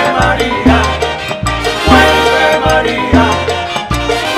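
Latin big band playing live, with saxophones, brass, bass and percussion keeping a steady dance beat, and a group of male singers singing together.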